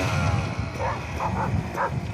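A dog barking four short times in quick succession, about a second in, over the low steady running of a Beta Xtrainer 300 two-stroke dirt bike engine.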